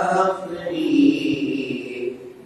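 A man chanting a manqabat, a devotional Urdu poem, drawing out one long note through the second half.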